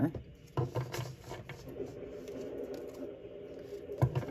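Tarot cards being handled on a table as a card is drawn from the deck, with a few light taps and clicks about a second in.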